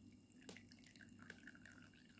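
Faint trickle of water poured from a glass bowl into a small glass dish, with a light click about half a second in.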